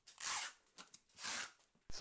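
Clear packing tape pulled off a hand-held roll in two short rips, about a second apart.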